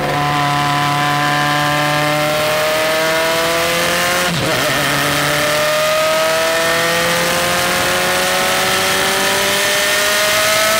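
Lancia LC1 race car's turbocharged four-cylinder engine of just under 1.5 litres, pulling hard under acceleration, its pitch rising steadily. The sound breaks briefly about four seconds in, then climbs again.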